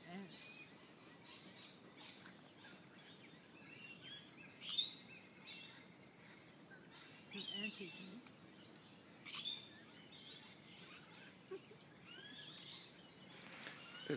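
Birds calling faintly and now and then, among them eastern whipbirds: several short, sharp sweeping calls, the clearest about five seconds in and again just after nine seconds.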